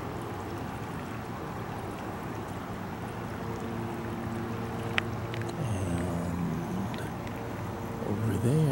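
Garden hose spraying water in a steady hiss. A low, steady hum joins it for a few seconds in the middle, and there is one sharp click about five seconds in.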